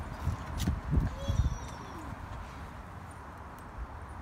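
A small child's feet tapping and scuffing on a concrete sidewalk as he pushes off on a balance bike, mostly in the first second and a half. A faint child's voice and a brief high chirp come about a second in.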